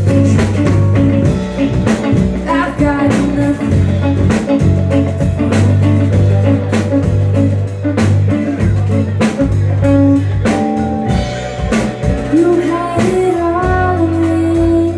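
Live band playing a song: electric bass guitar, drum kit, electric guitar and keyboard, with a steady bass line under a regular drum beat. The bass and drums thin out about ten seconds in, and a singing voice comes in near the end.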